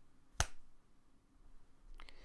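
A single sharp finger snap, a little under half a second in.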